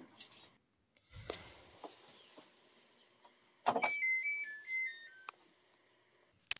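Dried laundry rustling as it is pulled out of a GE combination washer-dryer's drum, then the door shut with a thud about three and a half seconds in. The machine then plays its short electronic tune of beeps, stepping mostly downward in pitch, as it switches off.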